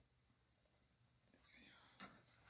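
Near silence: room tone, with a faint brief sound about a second and a half in.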